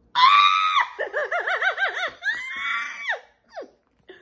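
A woman's high-pitched squeal of delight, then a quick run of short quavering 'ooh' notes and a long rising-and-falling cry.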